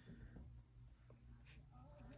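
Near silence with faint strokes of a watercolour brush on paper, over a low steady hum.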